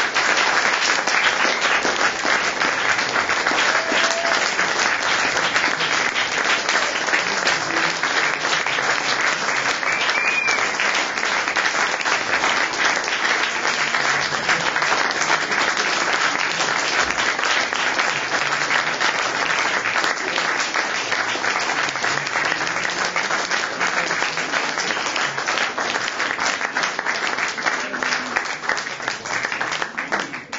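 Audience applause: a dense, steady clapping that holds throughout and begins to thin out at the very end.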